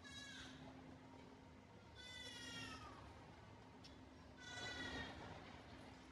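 A small child crying out three times, each cry a high wail that falls in pitch and lasts under a second, about two seconds apart, the last the loudest. A faint steady hum runs underneath.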